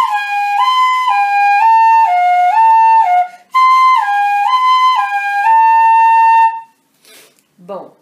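Pífano (Brazilian transverse fife) in C playing a slow left-hand finger exercise twice. A clear tone alternates between two notes, then between a second pair a step lower, each note about half a second. There is a short break between the two runs, and the last note is held.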